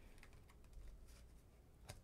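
Faint light taps and ticks of tarot cards being laid down and slid on a tabletop, with one sharper tap near the end.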